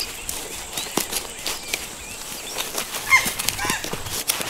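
Forest ambience: several short bird chirps, rising and falling, with a cluster of them about three seconds in, and scattered light clicks and taps.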